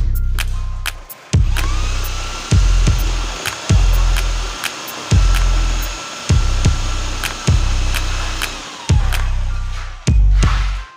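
Electric drill with a paddle mixer stirring cement-based wall putty in a bucket: its motor whine rises to speed about a second and a half in, runs steadily, and winds down near the end. Loud background music with a regular heavy bass beat plays over it.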